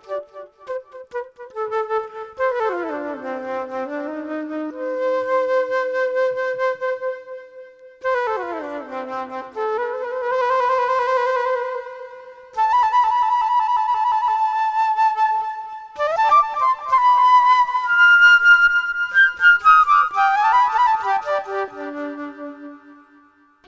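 Solo flute improvising birdsong-like phrases: notes that slide downward, long held tones, and quicker ornamented figures toward the end.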